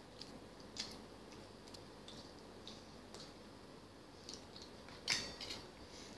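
Faint clicks and scrapes of a metal fork against a small metal bowl while eating noodles, a few scattered taps, the loudest about five seconds in.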